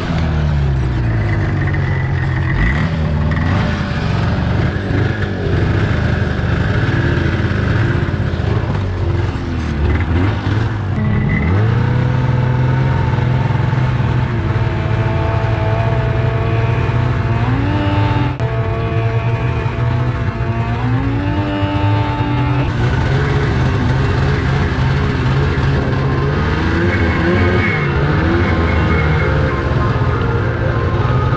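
Snowmobile engines running and revving, pitch rising and falling with the throttle. Background music plays under them, its melody stepping up and down through the middle.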